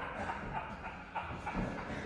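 Faint shuffling and light taps of boxing boots on padded gym floor mats during footwork.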